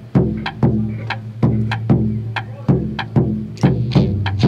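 Instrumental rock passage: electric guitar and bass plucking a steady, repeating riff, about two to three notes a second.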